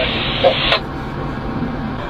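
Two-way radio hiss with a faint voice in it, cutting off abruptly under a second in, leaving a low steady rumble.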